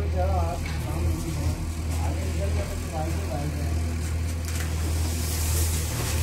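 Steady low hum or rumble with faint voices talking in the background, and a rustling, shuffling noise near the end.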